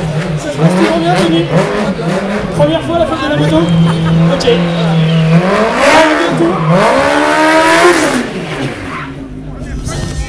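Sport quad's engine being revved up and down: it wavers, holds a steady note for a couple of seconds, then climbs and falls twice in quick succession before easing off near the end.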